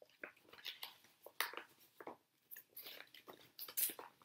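Irregular crinkling and rustling of paper or plastic packaging being handled, a quick string of small crackles and clicks.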